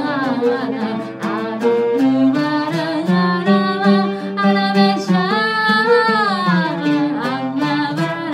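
Female voice singing an Arabic song, accompanied by oud and violin; the oud's plucked notes run steadily under the melody. About five seconds in, a long held note bends up and back down.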